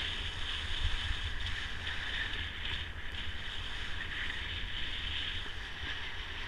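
Steady hiss of sliding at speed over groomed snow, with wind buffeting the action camera's microphone as a low, fluttering rumble.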